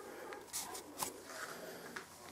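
Faint handling noise: soft rustling swishes and a couple of small clicks, the sharpest about a second in.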